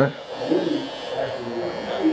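Electric hair trimmer buzzing steadily as it edges the hairline at the forehead during a line-up, with voices talking over it.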